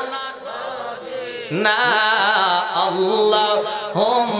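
A man chanting a sermon verse in a melodic, sung style into a microphone, holding long wavering notes. The voice is softer for the first second and a half, then rises and carries on louder.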